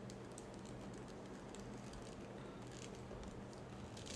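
Faint scattered clicks and rustling from hands working the small plastic parts and cloth costume of a collectible action figure, over a low steady electrical hum.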